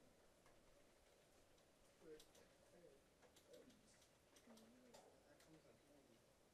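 Near silence: faint, indistinct voices in the background with a few soft clicks.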